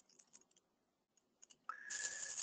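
Near silence with a few faint clicks. Near the end a low hiss comes in, carrying a thin steady tone.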